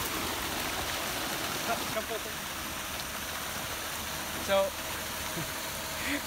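Young farmed carp crowding at the surface to feed, splashing and churning the water in a steady, continuous spatter.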